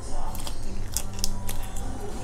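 Someone chewing and biting into a shrimp eaten by hand: a few short, crisp clicks and crunches scattered through the middle, over a low steady hum.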